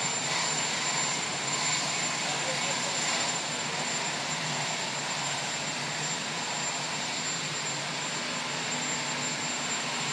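Aircraft turbine engines running at a steady idle: a continuous roar with a thin, steady high whine over it.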